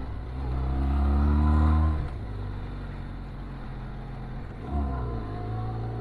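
Benelli TRK 502X parallel-twin motorcycle engine pulling up a steep climb: it revs up with rising pitch for about two seconds, falls back suddenly, runs steadily, and revs briefly again near the end.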